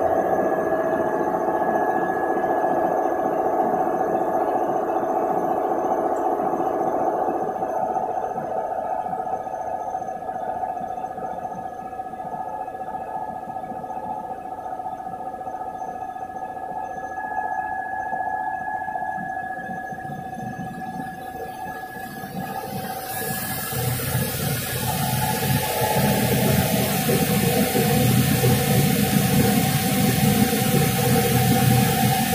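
Interlock (double-jersey) circular knitting machine running: a steady mechanical whine over a fast, fine clatter. A loud hiss joins it about three-quarters of the way through.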